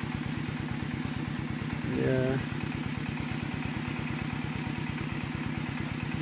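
A small engine idling steadily, with an even, rapid low pulse.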